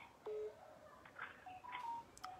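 Faint audio coming over a phone call line: a few short, steady tones, each a fraction of a second long.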